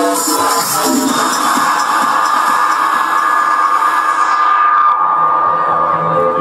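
Live techno played over a festival PA: the beat drops out about a second in for a breakdown of one long held synth tone over a rising noise wash, whose highs are filtered away near the end as low synth notes start.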